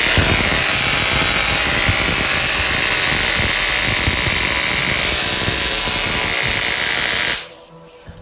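Home-built high-voltage electrostatic machine (over 100,000 volts) running, with sparks jumping across its spark gaps: a loud, steady buzzing crackle. It cuts off suddenly about seven and a half seconds in.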